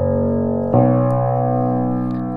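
Bass notes of a c.1870 Hagspiel grand piano ringing, a fresh note struck about three quarters of a second in and left to sustain; the tone is very rich, though the piano stands well below pitch on rusty old strings.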